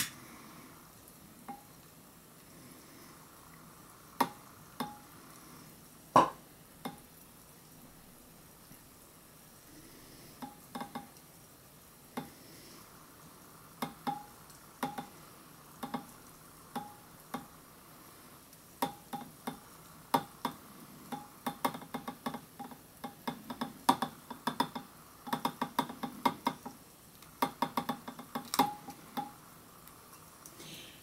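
Calcium metal reacting in a beaker of water, fizzing faintly with short sharp pops as the hydrogen it gives off catches in a lighter flame. The pops are scattered at first, with the loudest about six seconds in, and come quickly one after another in the last ten seconds.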